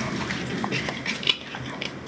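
A Jesmonite terrazzo tray being wet-sanded by hand under water in a plastic tub: a steady scrubbing rub with water sloshing and a few light clicks. This is the first coarse pass, taking off the top layer to reveal the terrazzo chips.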